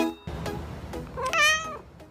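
A single cat meow a little past the middle, its pitch rising and then falling, over soft music that fades out after it.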